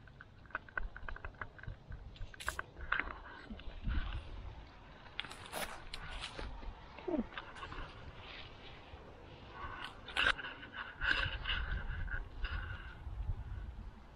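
Black sunflower seeds rattling and crackling as a hand scoops a handful from a cloth pouch, with scattered clicks and fabric rustling over a low rumble. The busiest crackling comes about two thirds of the way in.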